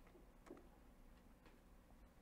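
Faint, scattered clicks of keys being typed on a computer keyboard, over quiet room tone.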